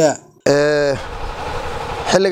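A man's voice holding one drawn-out syllable, then about a second of steady rushing noise.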